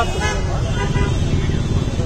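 Men's voices over a steady low rumble of street traffic, with vehicles idling and moving close by.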